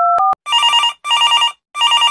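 The last touch-tone dialing beeps end about a third of a second in. A telephone then rings in three short, evenly spaced bursts.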